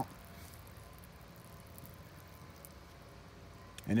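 Faint, steady trickle of water from the end of a small plastic siphon tube falling onto bare soil as the siphon finishes draining.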